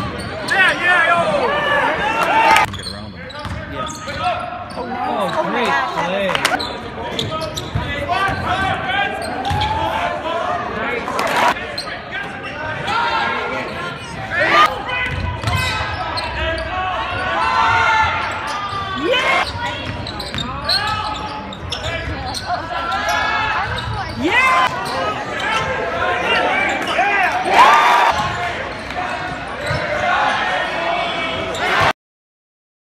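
Live basketball game sound in a gymnasium: a ball bouncing on the hardwood court with scattered sharp knocks, under a steady mix of players' and spectators' voices.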